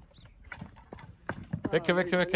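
A horse's hooves knocking sharply and irregularly on brick paving and masonry, about half a dozen hits, as the horse rears and shifts its feet. A man's voice comes in near the end.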